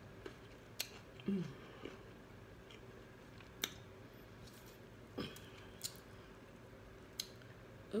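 Close-up chewing of fried chicken wings: scattered mouth clicks and smacks a second or so apart, with a short hummed "mm" about a second in.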